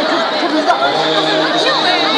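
A crowd of many people talking over one another, with no one voice standing out, over a steady, unbroken hum.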